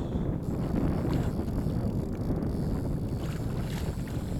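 Wind buffeting the microphone: a steady low rumble, with a few faint ticks.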